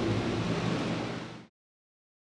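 A steady low hum with a hiss, fading slightly and then cutting off to silence about one and a half seconds in.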